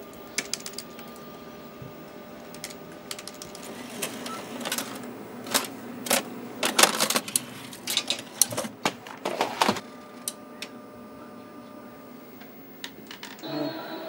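Plastic clicks and clacks of videotape-edit equipment being handled, keys on an edit controller and a tape cassette at a tape machine, coming thickest in the middle. A steady electrical hum of the equipment runs underneath.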